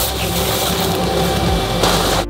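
Stiff protective wrapping rustling and crinkling as it is pulled off a steel block, over background music.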